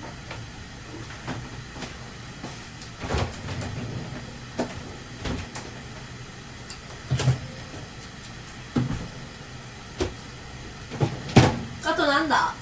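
Scattered knocks and clatters of household items being handled off to the side, about seven in twelve seconds, over a steady background hiss.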